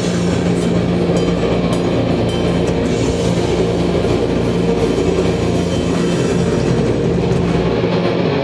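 A live doom/black metal band playing loud: heavily distorted electric guitars holding a droning chord over drums, with cymbal hits in the first few seconds.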